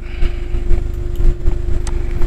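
Steady low background rumble with a faint steady hum, and a faint click near the end.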